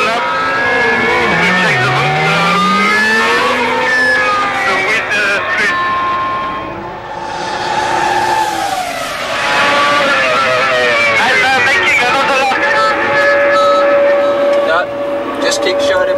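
Formula 1 V10 engine of a 2001 Jordan-Honda EJ11 as the car pulls away from the pit garage. The pitch drops and climbs again over the first few seconds as the revs change. It later runs out on the track, settling into a long, steady high note near the end.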